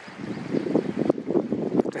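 Wind buffeting the microphone, an uneven, gusty rumble.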